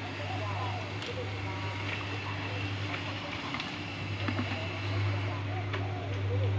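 A steady low hum runs throughout, with distant voices talking over it.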